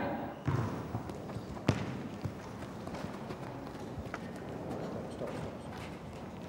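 A football being kicked and players' boots scuffing and stepping on artificial turf as an attacker and defender contest the ball: a few sharp knocks, the clearest about a second and a half in, over a steady low background noise.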